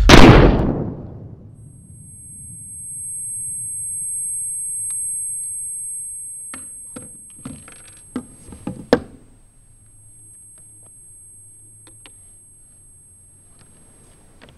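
A loud sudden bang that dies away over about a second, followed by a high steady ringing tone. Several seconds later come a run of small clicks and knocks, the loudest near the end of the run, as a pistol is set down on a wooden chair seat.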